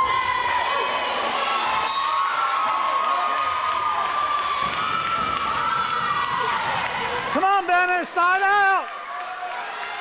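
Volleyball rally in a gym: the ball is hit, and one voice holds a long yell for about seven seconds. Then, near the end, come two or three loud, short, high shouts from a spectator close to the microphone.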